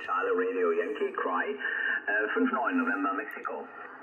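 A voice received on single sideband through an amateur HF transceiver's speaker on the 40-metre band, lower sideband at 7.192 MHz. It sounds thin and narrow, like telephone audio, and grows weaker in the last second.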